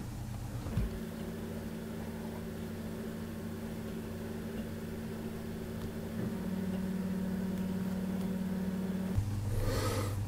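Steady low background hum with no speech. Its tone shifts about a second in, grows a little louder around six seconds, and drops back lower near the end.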